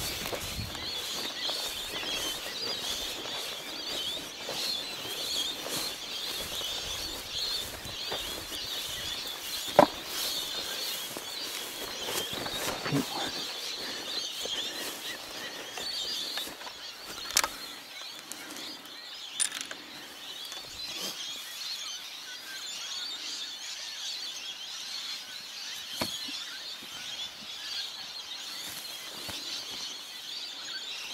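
Footsteps brushing and swishing through tall dry grass, with a few short sharp clicks, over a steady high chirping in the background.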